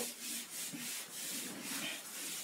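Duster wiping a whiteboard in quick back-and-forth strokes, about four or five a second, a quiet rubbing hiss.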